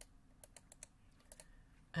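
Several faint, quick clicks of a computer keyboard, scattered and irregular.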